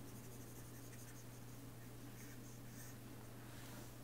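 Faint scratching of a stylus on a pen tablet in short strokes, over a steady low electrical hum.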